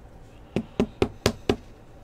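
A trading-card pack knocked against the tabletop five times in quick succession, about four knocks a second.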